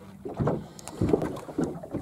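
Two dull thumps, about half a second and a second in, as a live snapper meets the carpeted deck of a small boat.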